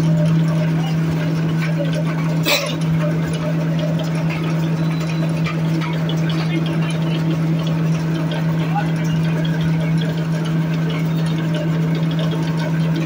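Coconut husk pulverizer running at a steady speed with a strong, even hum, with one brief knock about two and a half seconds in.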